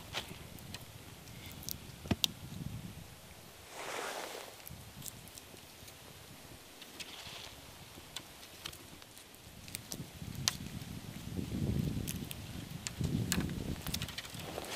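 Tree branches and leaves rustling with scattered small snaps and clicks of twigs and fruit stems as wild persimmons are picked by hand. A low rumble rises in the last few seconds.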